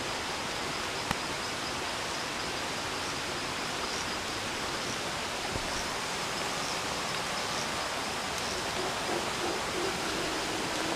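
Steady rush of a small rocky forest stream flowing, with faint high chirps now and then and a single sharp click about a second in.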